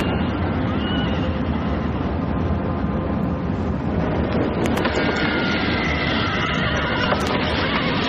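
Horses whinnying over a loud, steady rushing roar, with shrill calls about a second in and again past the middle.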